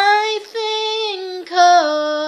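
A woman singing unaccompanied, holding long notes that mostly step down in pitch from one note to the next.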